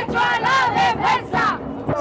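A group of protesters chanting slogans together in loud, high-pitched shouts, in short repeated phrases.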